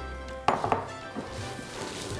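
Kitchenware being handled: a sharp clink about half a second in, followed by a few lighter clinks and a soft knock, over quiet background music.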